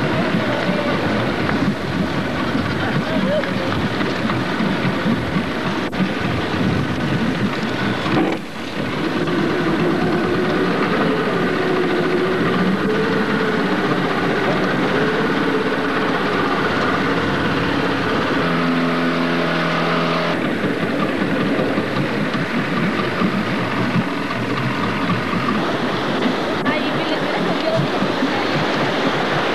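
A boat's motor running steadily, heard with wind noise on the microphone. There is a brief dropout about eight seconds in and a short pitched sound about two-thirds of the way through.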